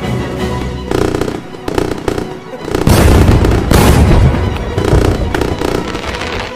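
Fireworks going off in a dense run of bangs over background music, loudest around the middle.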